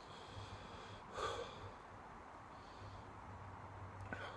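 A man's short, sharp breath through the nose about a second in, with faint quiet breathing otherwise. He is reacting to the heat of a superhot chili pepper, which he says makes his nose run and leaves him catching his breath.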